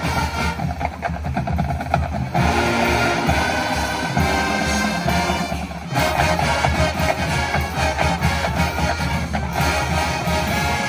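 High school marching band playing live: brass with drumline percussion keeping a quick rhythm. The music dips briefly and changes texture just before six seconds in.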